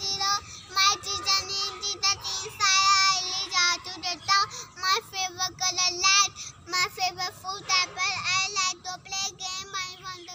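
A young child singing in a high voice, phrase after phrase with short breaks between.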